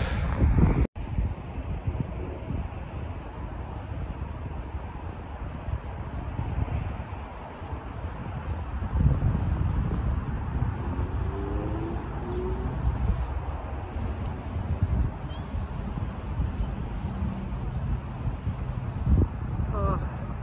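Wind on the microphone: a steady low rumble that rises and falls with the gusts, cut by a brief dropout about a second in.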